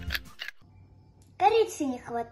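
Background music stops with a few light clicks. After a short quiet, a young girl's voice speaks briefly about a second and a half in.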